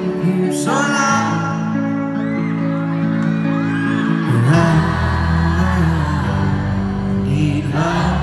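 Live band playing a pop-rock song on an arena stage, recorded from within the audience; a deep bass line comes in about halfway through.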